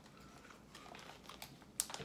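Faint scattered small clicks and rustles of beef jerky being eaten and handled, with a sharper click near the end.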